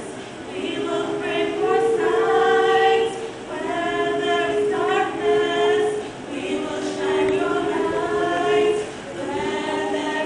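Choir singing in harmony, several voices holding long notes in phrases, with brief breaks between phrases about a third, two thirds and nine tenths of the way through.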